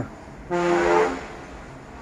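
A vehicle horn sounding once, a steady single-pitched toot starting about half a second in and lasting under a second.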